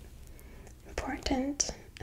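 A woman's soft-spoken voice, starting about a second in after a short pause.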